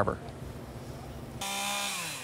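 Faint, even background noise, then about two-thirds of the way in a chainsaw is heard running at a steady speed.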